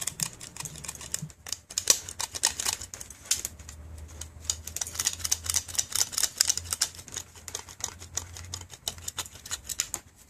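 Rapid, irregular clicking and tapping of the hard plastic throttle pedal and its attached throttle position sensor as it is squeezed and released by hand. A low hum starts about two seconds in and stops shortly before the end.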